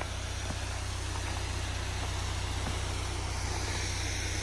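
A parked compact 4x4's engine idling, a steady low rumble over an even background hiss.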